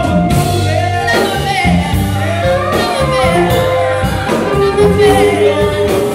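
A live rock band playing a song with singing over bass, electric and acoustic guitars and drums, loud and steady throughout.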